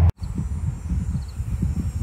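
Wind buffeting the microphone: an irregular low rumble that starts just after a brief dropout near the start.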